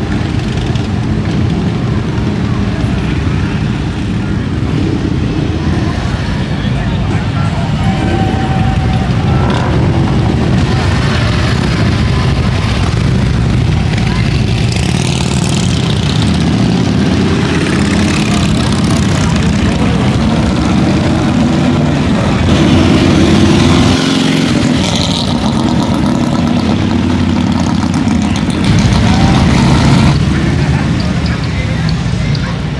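Harley-Davidson V-twin motorcycles riding past one after another, engines loud and continuous, swelling as each bike goes by, with voices of onlookers underneath.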